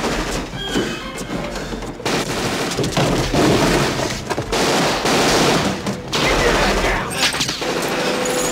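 Sustained automatic gunfire in rapid bursts, louder from about two seconds in, with glass breaking and falling near the end.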